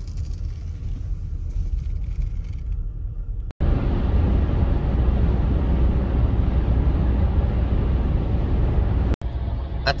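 Road noise inside a moving car: a low rumble from the engine and tyres on a town street. A sudden cut a little over three seconds in gives way to louder, fuller tyre and wind noise at highway speed, which runs until another cut just before the end.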